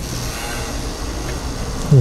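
Steady outdoor background noise, a low rumble with a hiss above it, growing slightly louder.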